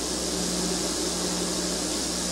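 Steady hiss with a low electrical hum: the background noise of an old recording's soundtrack, with no speech.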